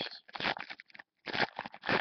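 Foil wrapper of a trading-card pack crinkling and tearing as it is pulled open by hand, in several short rustling bursts.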